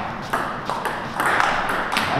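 A few sharp taps of a celluloid table tennis ball on the table and bat, the strongest one near the end as the serve is struck.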